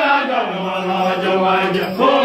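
Group of Twic East Dinka singers chanting a traditional dance song in unison, the voices settling on one low note held for over a second.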